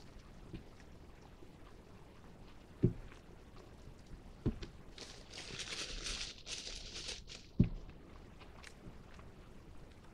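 Quiet eating sounds as a man chews a bite of ranch-dipped breaded plant-based chicken tender, with three sharp knocks, the last the loudest, and a few seconds of hissing noise in the middle.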